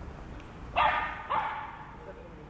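A dog barking twice, two short loud barks a little over half a second apart.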